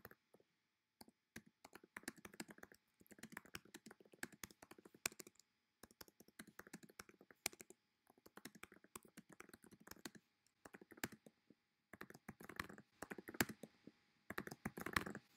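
Quiet typing on a computer keyboard: quick runs of keystroke clicks with short pauses between words and phrases.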